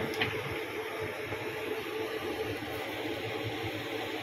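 Steady background hum of room noise, with no distinct events.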